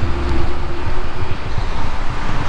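Road traffic from a highway interchange: a steady low rumble that eases about half a second in, with a passing vehicle's hum that fades out about a second and a half in.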